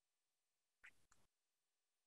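Near silence, with two extremely faint brief sounds about a second in.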